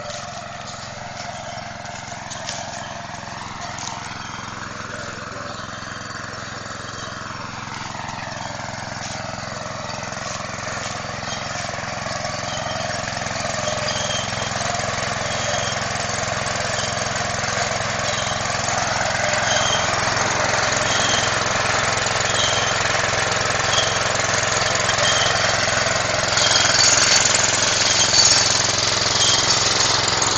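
A small engine running steadily and growing gradually louder, with faint regular ticks in its sound in the second half.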